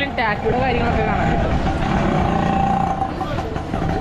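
Busy street-market crowd noise: people talking over passing motor traffic and a steady low rumble. A steady held tone sounds through the middle.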